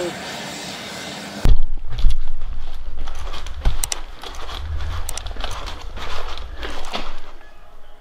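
Steady noise of jet aircraft on an airport apron, cut off suddenly about a second and a half in. Then comes close rumbling handling noise from a hand-held phone camera, with scattered knocks.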